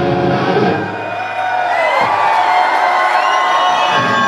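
Live electric guitar solo through a stage amplifier: a note slides downward about halfway through, then long held high notes bend upward, with a crowd cheering underneath.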